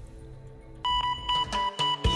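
Television segment jingle: soft for most of the first second, then a bright high electronic tone repeating in quick short pulses, about four or five a second.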